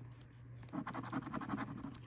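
Scratch-off lottery ticket being scratched: quick, short scraping strokes rubbing off the coating over a number spot, starting well under a second in.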